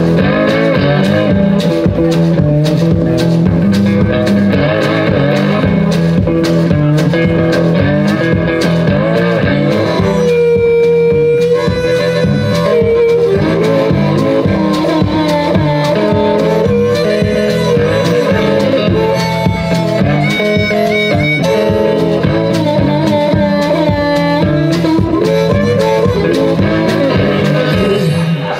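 Solo electric blues: an electric guitar playing with a steady stomped beat under it, and a harmonica that holds one long wavering note partway through.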